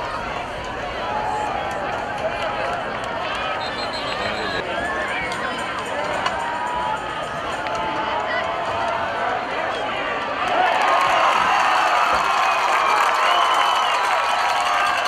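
Football stadium crowd talking and calling out, swelling into louder yelling and cheering about ten seconds in.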